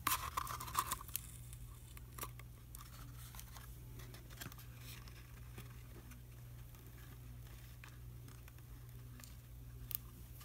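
Faint rustling and clicking of a paper-covered cardboard box being handled while a needle and thread are pushed through it to sew on a button, busiest in the first second, over a steady low hum.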